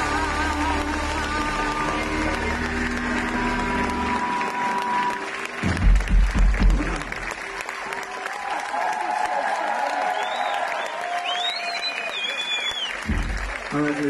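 Rock band playing live: a song ends with a held guitar note over bass, then a few heavy final drum-and-bass hits about six seconds in. The crowd then applauds and cheers, with whistles near the end.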